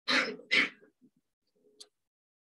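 A man coughing twice in quick succession, followed by a faint tick near the end.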